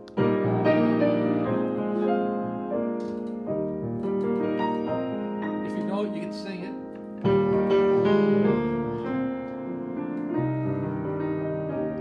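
Grand piano playing a slow gospel song in full chords, with a loud chord struck right at the start and another about seven seconds in, each left to ring and fade before the next phrase.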